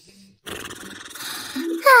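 A rough, rumbling snore from a sleeping cartoon character, lasting about a second, followed near the end by a loud falling sigh.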